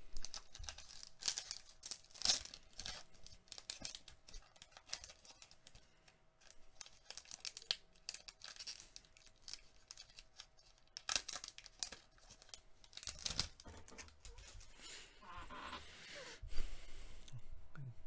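Foil wrapper of an Upper Deck hockey card pack being torn open and crinkled by hand: a run of sharp crackles and rustles, with a few louder rips.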